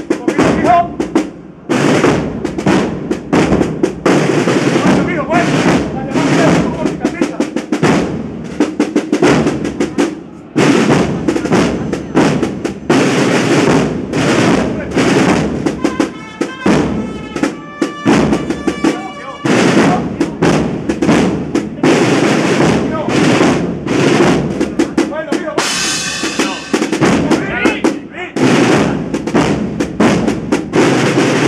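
A Spanish Holy Week processional band (agrupación musical) playing a march, led by snare drum rolls and bass drum strikes throughout, with short pitched melodic lines about halfway through and again near the end.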